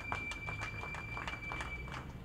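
Light, scattered applause from a small seated audience: a few people clapping unevenly, several claps a second, with a faint steady high tone underneath.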